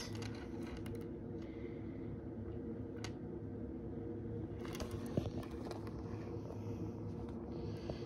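Quiet handling sounds: a few faint clicks and light rubbing as fingers work a small metal necklace clasp, over a steady low hum.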